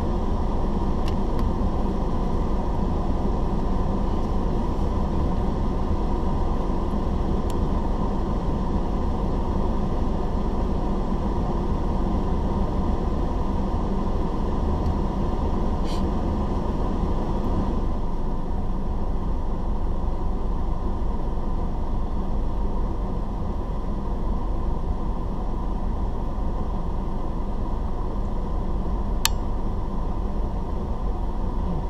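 Steady low rumble inside the cabin of a car standing at a junction with its engine idling, with a single sharp click near the end.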